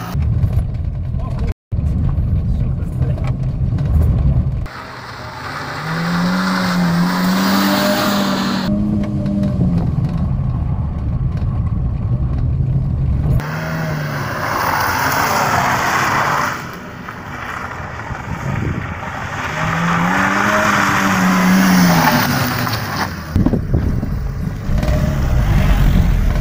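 Renault Clio's engine revving up and down as the car drives a tight slalom, the engine note rising and falling twice, with stretches of heavy low rumble in between.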